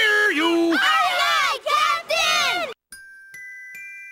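A chorus of voices shouting loudly in answer to a call, as in a cartoon theme-song intro, cut off abruptly near three seconds in. A few bell-like chiming notes follow, each higher than the last.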